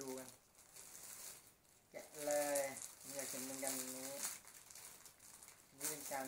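Clear plastic packaging crinkling as a set of toy Dragon Balls is handled, with a man's voice making drawn-out wordless sounds from about two seconds in.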